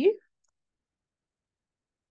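A woman's voice finishing a single short spoken word in the first moment, then dead silence.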